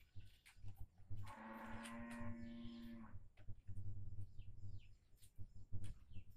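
A farm animal giving one long, steady call lasting nearly two seconds, starting about a second in, followed by a fainter call, with small birds chirping briefly in the background.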